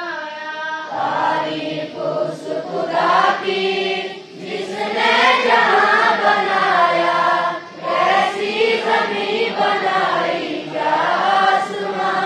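A large group of schoolboys chanting a morning prayer together in unison, a sung melody in phrases with short breaths between them.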